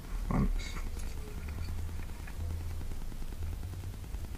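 Hand crimping tool squeezing a metal crimp sleeve onto a wire shark bite trace, with a faint click about half a second in, over a steady low hum.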